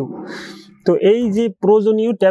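A man speaking in narration, starting just under a second in after a short fading breathy hiss.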